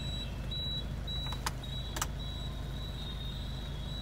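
Hyundai Verna engine idling, a steady low hum heard from inside the cabin with the car standing still, with a thin high-pitched whine over it. Two sharp clicks come about a second and a half and two seconds in.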